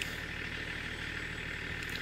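Steady low hum of a car engine idling.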